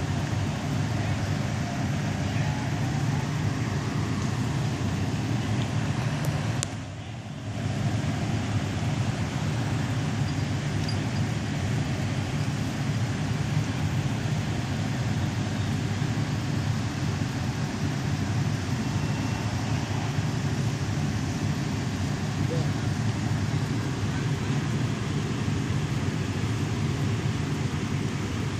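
Steady low rumble of an idling fire engine's diesel, with a brief drop in level about seven seconds in.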